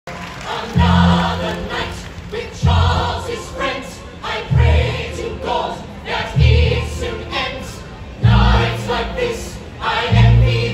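A musical-theatre ensemble singing in harmony through microphones, over amplified accompaniment with a heavy bass note landing about every two seconds.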